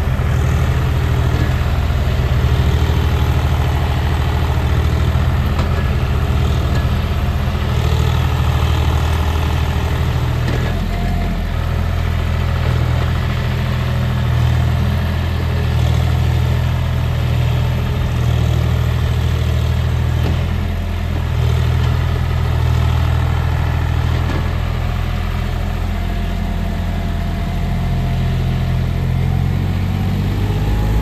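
Diesel engine of a John Deere 5050 tractor running steadily under load while it hauls a trolley heavily loaded with soil.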